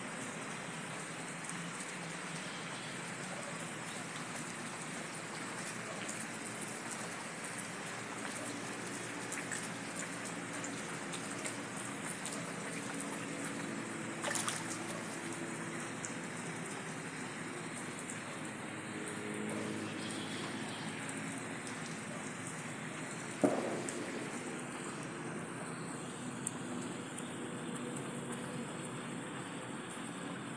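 Steady hiss of rain and water around a flooded house, with a few sharp knocks, the loudest late on.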